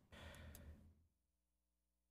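Near silence, with one soft exhale in the first second.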